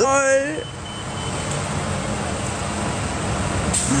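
Motor-vehicle traffic on a city street: a steady rush of engine and tyre noise with a low engine hum. A short vocal sound comes at the very start.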